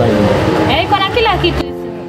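A voice over dense background noise, then background music with steady held notes comes in suddenly about one and a half seconds in.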